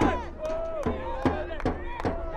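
Football supporters shouting and chanting over steady rhythmic bangs, about two or three a second.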